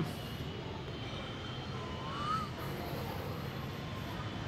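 Steady low background rumble, with one brief faint rising chirp about two seconds in.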